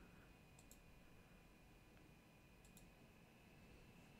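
Near silence, with a few faint computer-mouse clicks in quick pairs, one pair a little over half a second in and another near three seconds.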